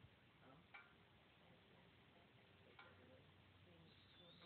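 Near silence: faint background hiss with two faint short ticks about two seconds apart.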